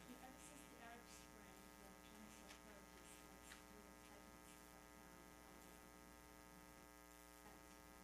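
Near silence under a steady electrical mains hum, with a faint, distant voice in the first few seconds.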